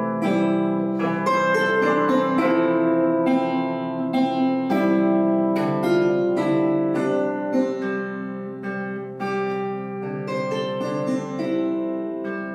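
Kanklės, the Lithuanian plucked zither, played solo with the fingers: a continuous flow of plucked melody notes over ringing, sustained lower notes.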